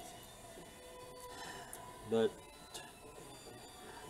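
Quiet workshop handling noise: a few faint, light clicks of small engine parts being moved by hand, over a faint steady background tone.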